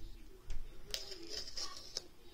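The paper pull-tab seal strip on an iPhone box being torn off. There is a small click about half a second in, then a scratchy tearing of paper from about a second in.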